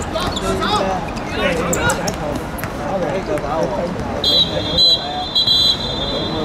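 Referee's whistle blown about four seconds in, a shrill high tone in three short blasts. Players shout on the pitch throughout.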